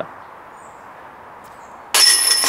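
A putted disc strikes the steel chains of a DiscGolfPark basket near the end, a sudden loud metallic jangle with the chains ringing on. Before it there is only quiet outdoor air with one faint high chirp.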